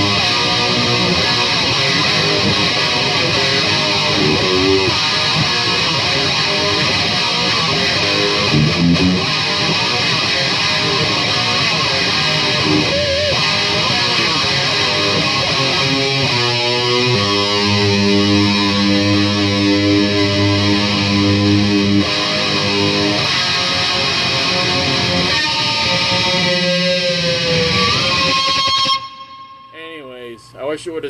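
Electric guitar played through an amp, with fast rock riffing. Chords are held for several seconds past the middle, and the playing ends on a held note that cuts off just before the end.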